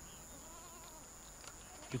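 Faint goat bleats over quiet open-air ambience.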